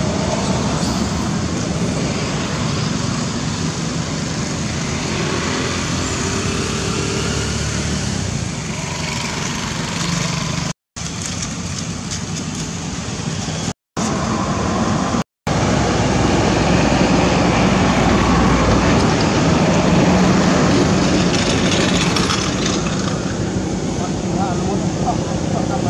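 Steady road-traffic noise with motorbikes passing, cutting out to silence three times for a moment in the middle.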